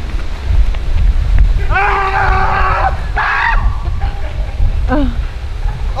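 Wind rumbling on the microphone, with a man's voice over it: a long held shout about two seconds in, a shorter yell right after, and a brief falling cry near the end.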